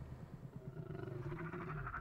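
Horror-film trailer sound design: a low, steady drone, joined about a second in by a pulsing, buzzing tone.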